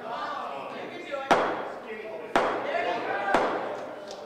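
Three sharp knocks about a second apart, each echoing briefly as in a large hall, over a faint murmur of voices.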